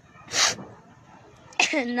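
A woman takes one short, sharp breath through the nose, a sniff, in a pause in her speech. She starts speaking again near the end.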